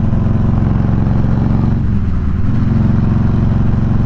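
Harley-Davidson Electra Glide's V-twin engine running steadily at highway cruising speed, heard from the rider's seat. About halfway through, the engine note dips briefly.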